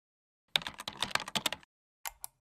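Computer keyboard typing sound effect: a quick run of about a dozen sharp key clicks over just over a second, starting about half a second in out of complete silence.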